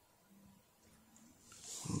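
Mostly near-silent room tone. Near the end a short rising throat and breath sound from a man runs straight into his speech.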